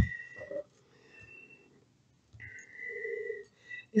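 A soft tap at the start as a tarot card is set down on the cloth-covered table. Then near silence, and from about two and a half seconds in a faint, breathy sound with a thin steady tone.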